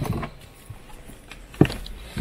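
A dog jumping down from a campervan doorway onto gravel, its paws scuffing, with one sharp thump about one and a half seconds in.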